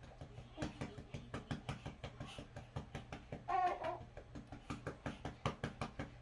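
A rapid series of sharp knocks, about five a second, beginning about half a second in, with a brief high voice about three and a half seconds in.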